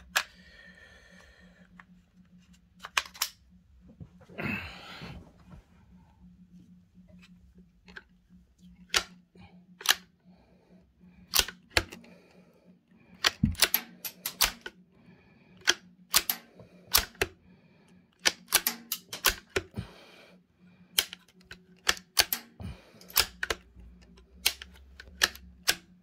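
Bolt of a CZ 452 bolt-action .22 rifle being worked over and over, a string of sharp metallic clicks and clacks in small clusters as it chambers and ejects .22 LR snap caps from a five-round magazine; it feeds them without a stoppage. A faint steady hum runs underneath.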